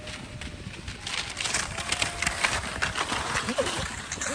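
Skis scraping and hissing over hard, slushy snow, loudest from about a second in. A few bird calls are heard faintly near the end.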